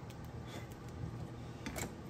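A few faint light clicks and taps as a circuit board and a metal display plate are handled, over a low steady hum.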